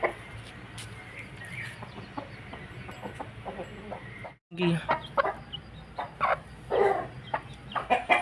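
Chickens clucking in short calls, mostly in the second half, over a low background. The sound cuts out completely for a moment about halfway.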